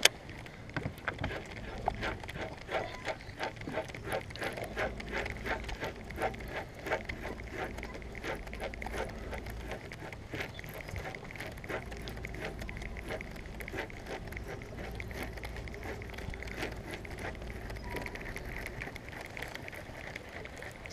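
Small waves lapping and slapping against the hull of a bass boat, a run of irregular short splashy knocks, thickest in the first half.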